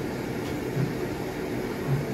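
Steady background hum and hiss, like a running fan or other appliance, with two brief low bumps, one about a second in and one near the end.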